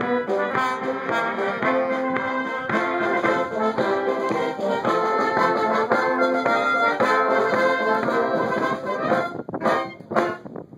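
Wind band of brass and saxophones playing outdoors in full chords; the music ends about nine seconds in.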